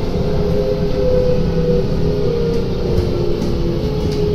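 Inside a Kawasaki–Nippon Sharyo C751B metro car slowing into a station: steady wheel and track rumble with a motor whine that steps down in pitch as the train brakes.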